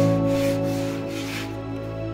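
Hand-sanding strokes with abrasive paper on a mahogany edge, a couple of rasping rubs, heard over background music with sustained chords.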